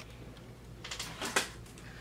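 Hands handling a marker and papers on a desk: a short run of light rustles and clicks about a second in, the last one the loudest.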